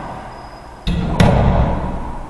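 Racquetball being hit hard in an enclosed court: two sharp smacks about a third of a second apart, from the racquet strike and the ball hitting the wall, followed by a booming echo.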